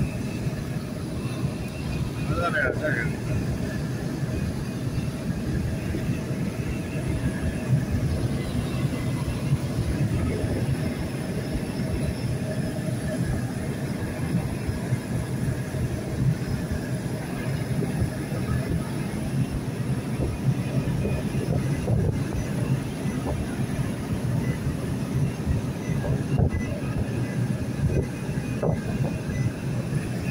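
Steady in-cabin road noise of a vehicle cruising on a highway: low engine and tyre rumble with no breaks, plus a brief wavering tone about two and a half seconds in.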